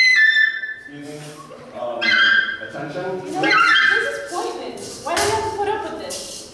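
A clarinet plays a few high notes stepping down in pitch, the loudest sound here, ending just under a second in; then people talk.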